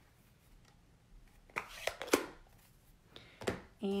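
Ink pad being tapped onto a large rubber stamp mounted on an acrylic block, a few light taps about a second and a half in and another near the end.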